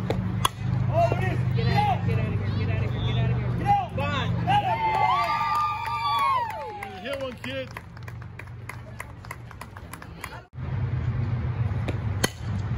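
A softball bat strikes the ball with a sharp crack about half a second in, followed by spectators shouting and cheering with rising and falling voices, then scattered clapping.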